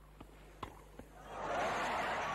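Tennis ball struck by rackets with a few sharp knocks, then crowd applause swelling up from about a second and a half in as match point is won.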